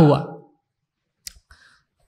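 A man's spoken word trails off, then after a pause a single sharp, short click about a second and a quarter in, followed by a faint brief softer sound.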